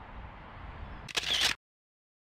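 Outdoor ambience with a low rumble, broken about a second in by a single camera shutter click, after which the sound cuts off to dead silence.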